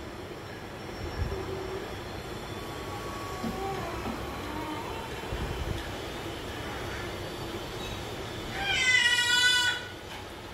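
A baby's high-pitched vocal squeal, about a second long, near the end, over a low room background.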